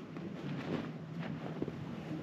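Light wind buffeting the microphone as a steady, even rush, with a few faint clicks.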